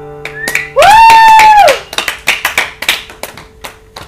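The acoustic guitar's last chord rings out and fades, then a loud, high-pitched cheer rises, holds for about a second and falls away. Scattered hand clapping from a small audience runs through the rest.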